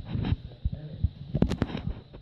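Muffled, indistinct voices, with a quick run of sharp clicks about a second and a half in.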